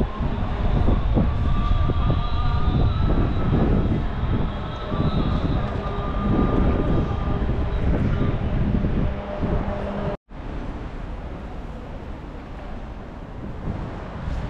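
Wind buffeting the camera microphone: a loud, uneven low rumble that comes in gusts. It cuts out for an instant about ten seconds in and is softer afterwards.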